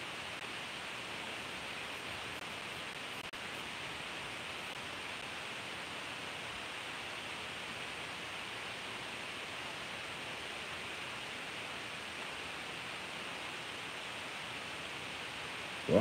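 Steady, even hiss of background room noise, with a faint click about three seconds in.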